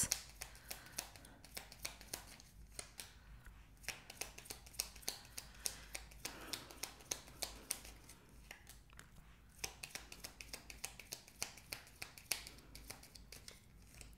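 A deck of tarot cards being shuffled by hand: a faint, irregular run of soft card clicks, several a second.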